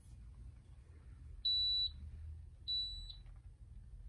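Digital tennis racket weight-and-balance scale beeping twice: two short, steady, high-pitched beeps a little over a second apart.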